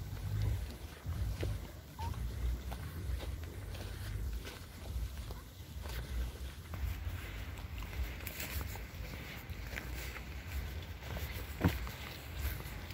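Footsteps of a person walking on a dirt path while holding a phone, with an uneven low rumble of handling on the microphone. Scattered small clicks run throughout, and one sharper click comes near the end.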